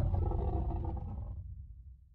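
Deep dinosaur-roar sound effect over a low rumble, dying away steadily and fading out by the end.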